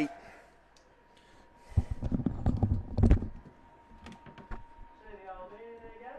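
A cluster of low thumps and clicks, like close handling knocks, starts about two seconds in and lasts over a second. A few separate sharp clicks follow, then faint voices and a thin steady tone near the end.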